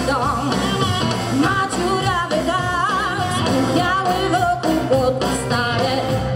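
Live blues-rock band playing: drums, bass and electric guitar under a melody line with vibrato from a woman singing and a harmonica.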